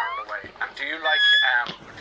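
A baby's high-pitched squeal, held briefly about a second in, amid voices from a television show.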